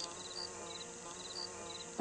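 A faint, steady insect-like buzzing hum, with a few short high chirps over it.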